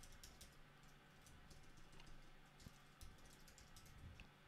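Faint typing on a computer keyboard: a run of quick, irregular keystrokes.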